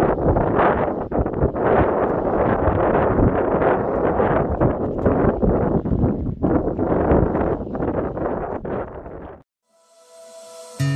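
Loud, gusty wind blowing across the microphone, rising and falling in strength, cutting off suddenly near the end.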